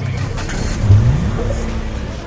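A motor vehicle engine over a low rumble, its pitch rising about a second in and then holding steady.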